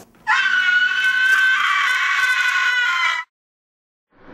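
A long, high-pitched scream that starts about a quarter second in, holds steady for about three seconds and cuts off suddenly.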